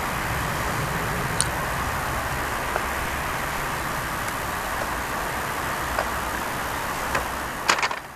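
Steady traffic noise, a dull rumbling road hum, with a few sharp clicks scattered through it and a quick cluster of clicks near the end.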